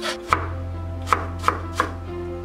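Chef's knife mincing carrot on a wooden cutting board: four sharp strikes of the blade on the board, one just after the start and three more in quicker succession in the second half.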